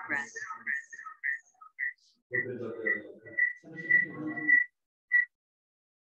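A run of short, high tones at one steady pitch, about two a second, with a muffled voice under some of them; they stop about five seconds in.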